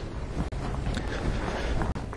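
Steady background noise of a lecture room: a low hum and hiss with no distinct events.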